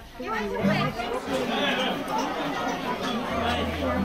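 Several people chattering and talking over one another in greeting, with a low steady hum coming in near the end.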